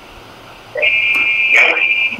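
A steady high-pitched electronic beep on a telephone line, starting a little under a second in and lasting just over a second, after faint line hiss.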